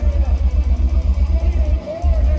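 Death metal band playing live through a PA, with no bass guitar: rapid, pounding kick drums under distorted guitar and harsh vocals, with a momentary break just before the end.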